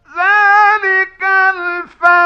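A man's high, sustained voice reciting the Quran in the melodic tajweed style: long held notes with ornamented turns, starting right after a pause and breaking briefly twice.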